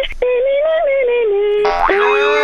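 A voice singing a long, held high note, broken off briefly just after the start. Near the end a comic sound effect cuts in over it.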